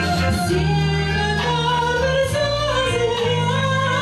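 A woman singing a 1960s-style retro song into a handheld microphone over a recorded backing track, her melody moving from note to note above a steady bass line.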